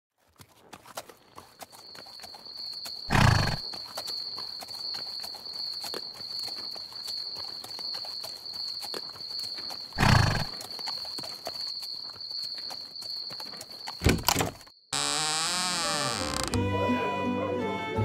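Night ambience: a steady high insect trill over a crackly background, broken by two heavy thuds about seven seconds apart and a few sharp knocks near the end. About three seconds before the end it cuts to music.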